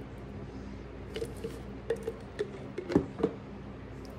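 A metal spoon scooping thick mayonnaise, with a run of small clicks and scrapes against the container. The loudest click comes about three seconds in.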